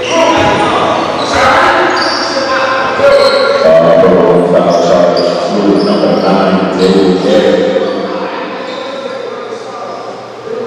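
Basketball game in a large gym: a ball bouncing on the hardwood court, short high squeaks of sneakers, and many overlapping voices of players and spectators shouting, echoing in the hall. The shouting is loudest from a few seconds in until near the end.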